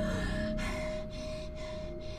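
A woman's heavy, gasping breaths, about two a second, over a single held note of trailer music.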